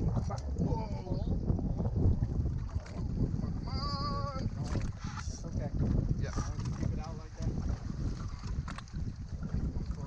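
Wind buffeting an action camera's microphone, a steady, fluctuating low rumble. Muffled voices sit underneath, and a brief wavering vocal call comes about four seconds in.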